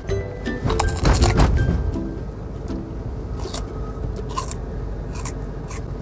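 Background music over the low hum of a car cabin, with crisp crunches of a raw green maesil (Korean green plum) being bitten into and chewed, strongest about a second in, then a few fainter crunches.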